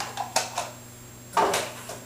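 Kitchen utensils knocking and clattering against a glass mixing bowl while brown sugar is added: a few sharp taps, then a louder clatter about one and a half seconds in.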